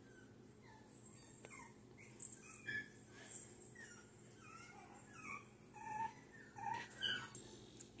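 Faint, short, high-pitched whines and squeaks from seven-week-old schnauzer puppies, scattered through the stretch with a few louder ones in the second half.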